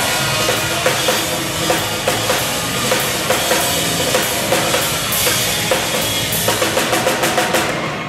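Live drum-kit break: bass drum, toms and cymbals struck with sticks and mallets in a steady beat over held instrumental notes, the strokes quickening into a roll near the end.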